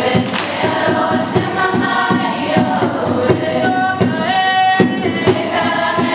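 A large group of voices singing a Māori waiata together, sustained notes moving in steps, over a regular rhythmic beat.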